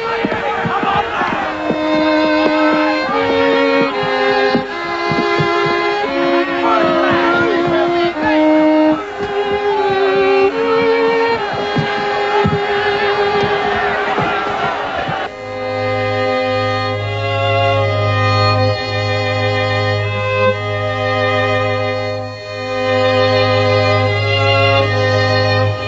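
A small string ensemble of violins, cello and double bass plays a slow melody, with crowd noise under it for the first fifteen seconds or so. Then the sound changes suddenly to a cleaner, fuller string texture over a held low bass line.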